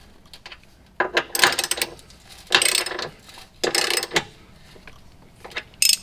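Hand socket ratchet clicking in four short runs as bolts are run up through a tie-down bracket into a car's chassis.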